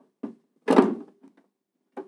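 Plastic cover of an Air King AK7000 humidifier being fitted back onto its housing: a faint click, then a louder short clack about three quarters of a second in, followed by a few faint ticks of handling.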